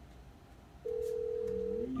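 A single steady telephone tone, held for about a second, sounding during a test call between lab phones.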